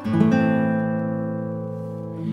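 Background music: an acoustic guitar chord struck and left ringing, slowly fading.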